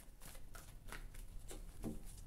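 A deck of tarot cards being shuffled by hand: a run of soft, irregularly spaced clicks as the cards slap together.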